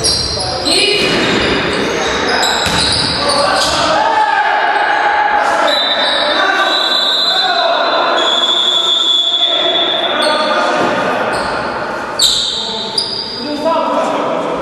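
Indoor basketball game in an echoing gym: a basketball bouncing on the court and players calling out, with short high-pitched tones over the noise.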